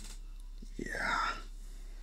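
A person's voice: one short whispered utterance about a second in.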